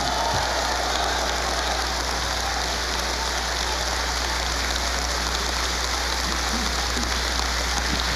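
Large crowd applauding steadily, a dense, even clatter of many hands clapping at once.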